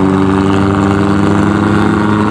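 Motorcycle engine running at speed, its pitch climbing slowly under steady throttle, over a rush of wind and road noise.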